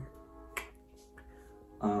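Background music with held notes, and a single sharp click or snap about half a second in.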